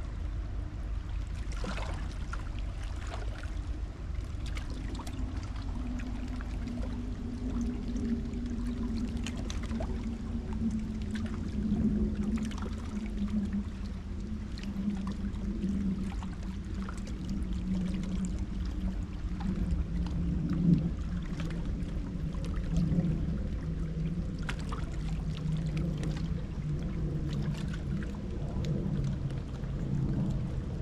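The low engine drone of a passing boat, its pitch slowly falling over the whole stretch, over a steady low rumble, with water lapping and splashing now and then.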